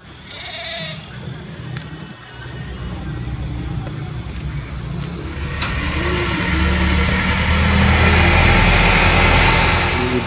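Goats bleating in a pen, a few short calls. Under them runs a low rumble with a rush of noise that builds through the second half and is loudest near the end.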